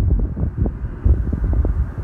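Wind buffeting the microphone in uneven gusts, a loud low rumble that grows stronger about a second in.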